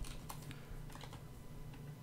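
A few faint computer keyboard keystrokes in the first half-second or so, then a steady low hum.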